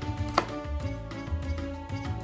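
A chef's knife chopping garlic on a wooden cutting board: one sharp knock about half a second in, over steady background music.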